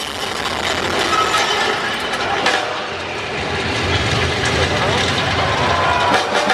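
Stadium concert crowd noise: a dense murmur of many indistinct voices close to the microphone, over a low rumble that swells in the middle.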